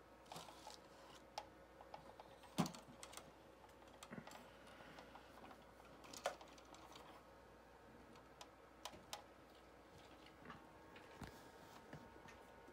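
Near silence with faint, scattered clicks and taps, two louder ones about two and a half and six seconds in.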